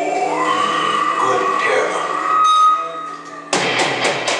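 Live grindcore band: a voice over the PA amid held amplifier tones, then the full band crashes in with drums and distorted guitar about three and a half seconds in.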